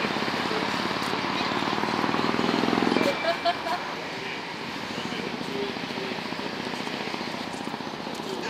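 Street noise: a vehicle passes close by, loudest over the first three seconds and then dropping away suddenly, with voices of passers-by.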